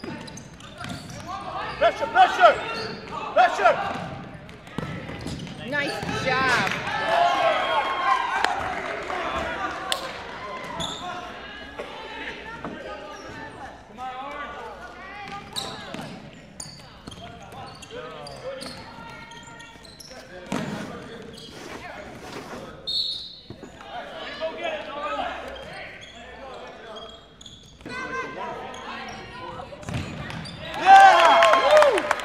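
Futsal ball being kicked and bouncing on a hardwood gym floor, the impacts echoing in the hall, amid shouts from players and spectators.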